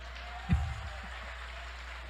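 Audience applause, an even patter of many hands, with a single low thump about half a second in that stands out as the loudest sound.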